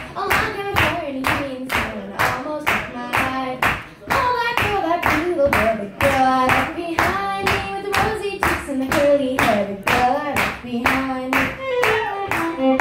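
Steady hand clapping in time, about two and a half claps a second, under a woman singing a tune without instruments.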